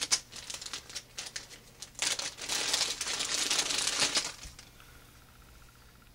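Packaging crinkling and rustling as a replacement belt clip is unwrapped. Scattered clicks come first, then about two seconds of dense crinkling from roughly two seconds in, which dies away near the end.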